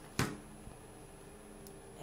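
A single sharp knock just after the start, then quiet room tone with a faint low hum.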